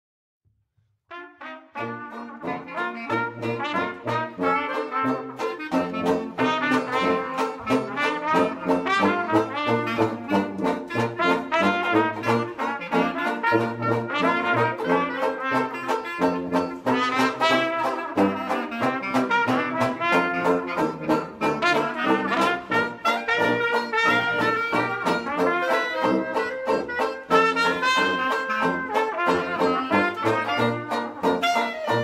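Traditional jazz quartet of clarinet, trumpet, banjo and tuba starts playing about a second in. The horns carry the melody over the tuba's bass notes and strummed banjo, with no singing.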